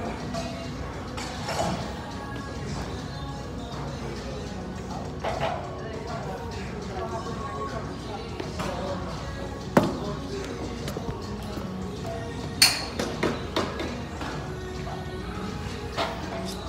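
Background music and voices in a gym. A sharp knock comes about ten seconds in, and a louder one a little before thirteen seconds, followed by a few smaller knocks.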